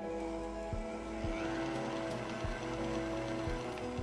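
Background music with a steady beat over an electric stand mixer whirring as its wire whisk beats aquafaba at medium speed.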